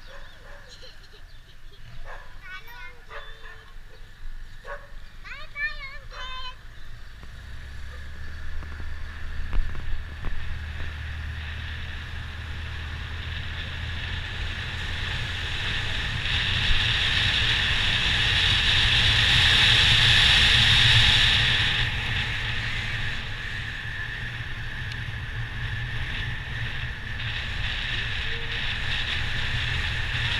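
A motorbike riding along a street. Its engine hum and the wind noise build from about a quarter of the way in, are loudest a little past the middle, then settle into a steady run. A few short voices call out in the first several seconds.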